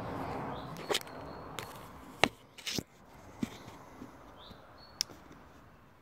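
Handling noise from the recording phone: rubbing over the camera lens as it is wiped clean, then a few scattered clicks and knocks as the phone is handled and set back in position.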